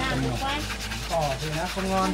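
Indistinct voices of people talking nearby, too unclear to be written down as words.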